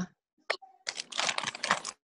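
Rapid clattering of computer keyboard keys, picked up through a video-call participant's microphone, beginning after a single click about half a second in.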